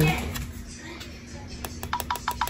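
A quick, even run of taps on the Epson EcoTank ET-16600's touchscreen control panel, setting the ink level. It starts about one and a half seconds in, at about five short ticks a second, over a faint steady hum.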